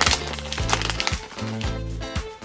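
Plastic toy blind bag crinkling and tearing as it is pulled open by hand, over background music with a steady bass.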